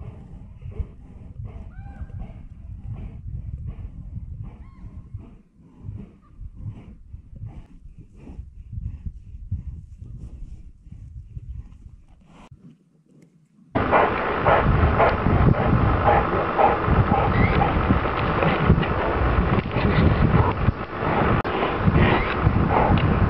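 Brown bears growling low and rough, in uneven pulses, with faint whistled calls early on. About two-thirds of the way through this cuts off suddenly and a much louder rough, crackling noise takes over.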